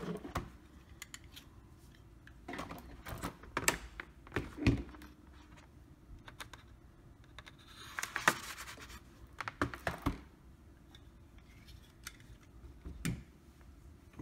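A cardboard retail box being handled and its sticker seal cut open with a folding pocket knife: scattered clicks and knocks, with a short scraping rasp about eight seconds in.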